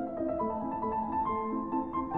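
Piano music, several notes sounding together and changing a few times a second.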